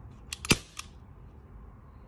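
CO2-powered, non-blowback airsoft Glock 19 pistol firing a single shot about half a second in: one sharp pop, with a few lighter clicks just before and after it.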